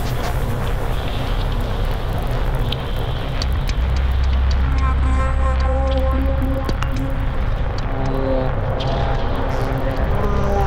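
Electronic music played live on a laptop and controller. A steady low drone runs throughout, a deep bass note comes in about four seconds in, and a repeating pattern of short synth notes joins about a second later.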